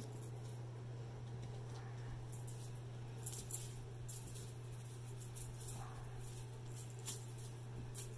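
Faint light rattling and rustling from kittens batting at a tinsel wand toy, a few soft clicks at a time, over a steady low hum.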